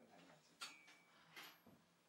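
Near silence: room tone, with two faint ticks a little under a second apart.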